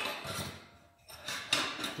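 Metal hinge pin clinking and scraping against the steel hinge bracket of a grill lid as it is fitted. There is a lull about a second in, then a short run of sharp clicks.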